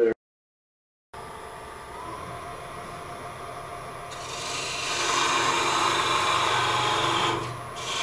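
After about a second of silence, a wood lathe runs with a parting tool cutting a groove into the spinning wooden blank to part it off. The cut grows louder about four seconds in and eases briefly near the end.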